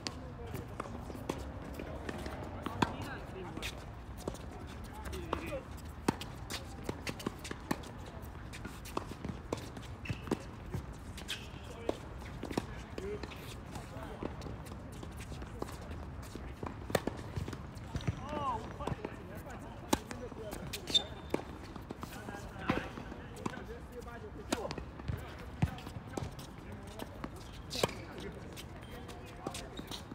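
Tennis balls struck by rackets and bouncing on a hard court during doubles rallies: sharp pops at irregular intervals, with the loudest hits a few seconds apart, and players' footsteps on the court.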